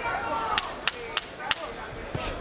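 Four sharp knocks about a third of a second apart, from the timekeeper's ten-second warning signalling that the round is almost over, over steady arena noise.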